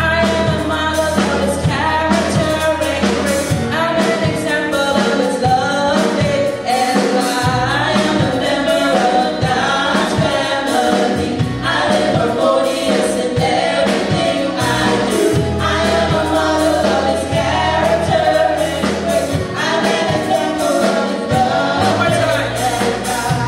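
Live gospel worship song: a team of women singers leading on microphones over a band with a heavy bass and a steady beat, the music running without a break.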